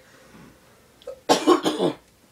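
A person coughing, two or three quick harsh coughs about a second and a half in.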